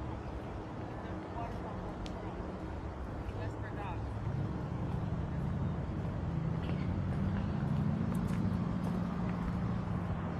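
Street ambience: a vehicle's engine hum on the road grows louder from about four seconds in and peaks near the end, with a few short high chirps earlier.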